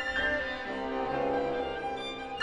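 An orchestra led by bowed strings, violins and cellos, playing classical music: an accented chord right at the start, then held notes.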